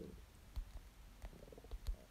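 Fingertip taps on a smartphone touchscreen as a six-digit code is keyed in on the on-screen number pad, a handful of irregular faint taps with the sharpest near the end. A short low voice murmur comes right at the start.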